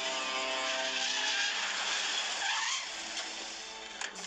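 A vehicle driving fast: a loud rush of engine and tyre noise that eases off about three seconds in, with music underneath.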